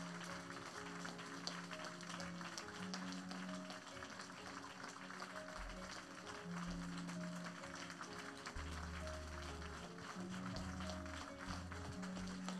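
Soft church music, sustained chords over a slow bass line, with light scattered hand-clapping from the congregation.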